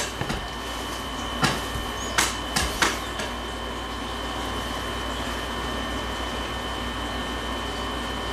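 Tarot cards and deck being set down and tapped on a wooden tabletop: a handful of short, sharp taps in the first three seconds. After that only a steady room hiss with a faint high whine.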